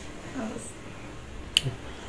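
Quiet room tone with a faint, brief voice sound near the start and a single sharp click about a second and a half in.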